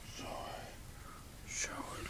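A man's soft, breathy whispering in two short stretches, one about a quarter of a second in and one near the end.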